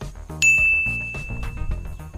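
A single bright ding about half a second in, ringing on as one steady high tone for nearly two seconds, over background music.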